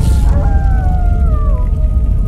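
Cinematic film score: a loud hit at the start over a deep, steady low drone, with a few high tones gliding slowly downward through the middle.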